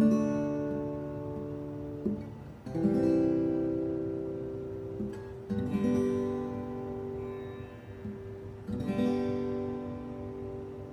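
Acoustic guitar strumming a chord loop, D, C, G, G: four full strums about three seconds apart, each left to ring out and fade, with a light stroke before the second and third.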